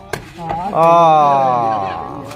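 A sharp smack as the sepak takraw ball is kicked in a jumping spike. Then, about a second in, one man's long loud shout, held and slowly falling in pitch; the shout is the loudest sound.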